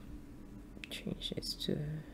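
Soft, breathy speech, ending in a single drawn-out word near the end, with a few short clicks just before it.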